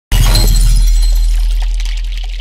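Logo-intro sound effect: a sudden loud hit with a steady deep low tone under a crackling high sparkle, fading slowly.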